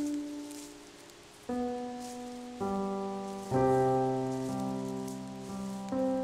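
Slow background music on a keyboard: single notes and chords struck every second or so and left to ring and fade. About halfway through a low bass note comes in and the chords grow fuller and louder.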